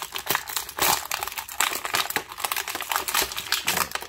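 A thin clear plastic packaging bag crinkling as an action-figure part is pulled out of it: a dense, uneven run of sharp crackles.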